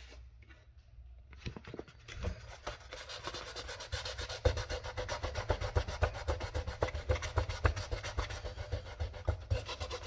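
400-grit sandpaper rubbed in rapid back-and-forth strokes over the plastic body of a 1/14-scale RC Lamborghini Huracan, sanding out crash scratches before a repaint. The strokes start about a second and a half in and grow louder and steadier from about three seconds in.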